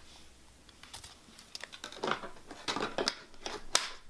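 Paper and stationery being handled on a desk: light rustling of paper and a string of small taps and clicks, sparse at first and busier from about two seconds in.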